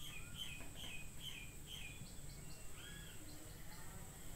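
Faint bird chirping: a run of short high chirps repeated a few times a second in the first half, then a longer call near three seconds.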